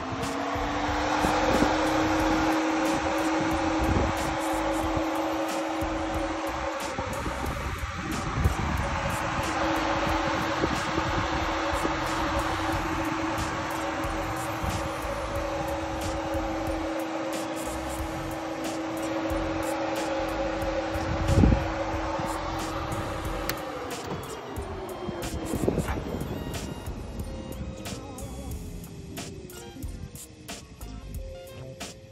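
New 16-inch 12-volt electric radiator fan switched on: it spins up at once to a steady hum with a broad rush of air, and about three-quarters of the way through it winds down, its hum falling in pitch as it slows. A single sharp knock sounds shortly before the wind-down.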